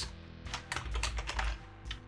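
Typing on a computer keyboard: a quick run of key clicks through the first second and a half and another click near the end, over soft background music.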